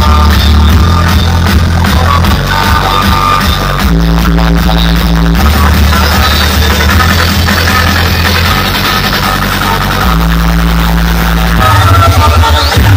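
Loud electronic dance music played through a large outdoor DJ sound system, with heavy bass notes held for a second or two at a time.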